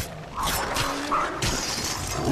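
Film fight-scene sound effects: a quick run of sharp hits and crashing clashes, four strikes within about a second and a half.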